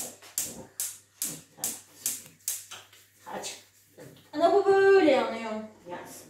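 Gas hob's built-in igniter clicking repeatedly, about two and a half clicks a second for roughly three seconds, as a burner knob is turned to light the gas. About four seconds in, a loud drawn-out voice takes over.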